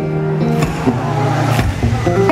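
Amplified acoustic guitar playing through a live-concert sound system: low notes ring on under a rough, noisy wash.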